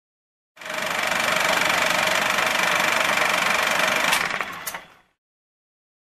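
Radio static sound effect: a steady hiss with a faint constant whistle in it, lasting about four and a half seconds, with two clicks near the end before it cuts off suddenly.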